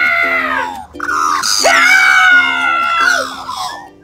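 A child's voice screaming in two long cries, each falling in pitch as it trails off, over a bed of plucked, bouncy background music.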